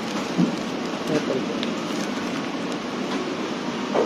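Steady hiss of heavy rain, with a few brief faint sounds over it about half a second and a second in.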